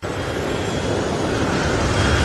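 Jet airliner engines running: a steady rushing noise with a faint high whine, cutting in suddenly and growing slightly louder.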